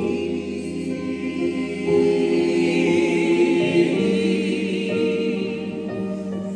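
Small gospel choir singing held chords in harmony, with a Yamaha Motif keyboard accompanying; the chord changes about two seconds in and again about four seconds in, with one voice singing with vibrato above the rest.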